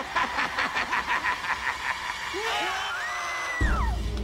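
Several young people screaming in fright together. First comes a rapid, pulsing run of cries, then a long scream that rises, holds high and falls away. A loud, low, rumbling music sting cuts in just before the end.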